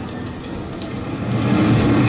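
Rushing, rumbling whoosh from an interactive exhibit's portkey-travel effect, played over speakers as the countdown hits zero and the swirling vortex begins. It builds up louder about a second and a half in.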